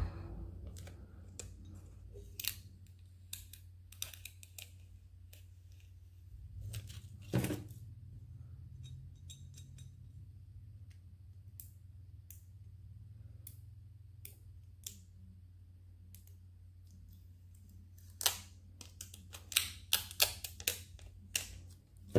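Transfer paper being slowly peeled off a glass bottle to leave a vinyl decal, giving scattered small crackles and ticks, with a quicker run of crackles near the end. A steady low hum sits underneath.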